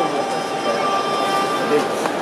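Indoor arena crowd murmuring, many voices blending into a steady hubbub, with a faint steady high tone running through it.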